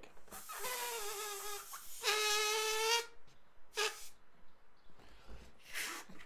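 Air let out of an over-inflated latex balloon through its stretched neck, making the neck squeal: one squeal of about a second, then a louder one about two seconds in, and a short third near four seconds. A sharp breath follows near the end.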